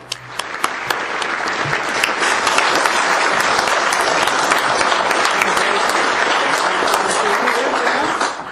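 Audience applauding, swelling over the first couple of seconds and then holding steady.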